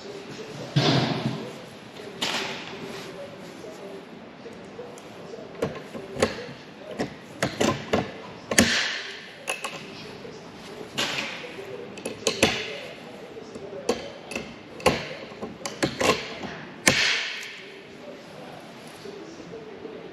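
Rivet gun setting blind rivets in aluminium rib parts: a series of sharp, irregularly spaced snaps, several followed by a short hiss, with light taps and clinks of parts and tools in between.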